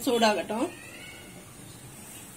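A domestic cat meowing: one short meow at the very start.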